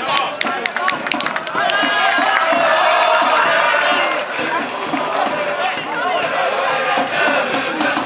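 Group of supporters in the stands singing a cheer chant together, many voices drawn out at once, with sharp hits in the first couple of seconds.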